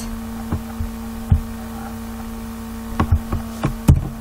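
Steady electrical hum with scattered short clicks from a computer mouse and keyboard, several close together near the end.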